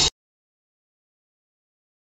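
Silence: the audio drops out completely. A walk-behind concrete saw's engine and cutting noise cuts off abruptly within the first instant.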